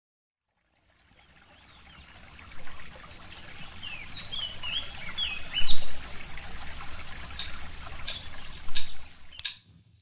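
Woodland ambience: a trickle of running water with birds chirping, fading in over the first two seconds. A few sharp ticks come near the end, and the sound drops out just before the music begins.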